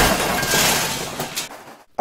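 Car-crash sound effect from a film, mixed very loud: a crash with breaking glass dying away, with a few clinks of debris about a second in. It cuts off just before two seconds.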